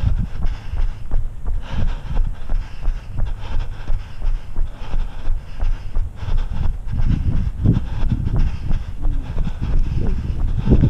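Running footsteps on a paved road, a quick steady rhythm of thumps, with wind rumbling on the body-worn camera's microphone.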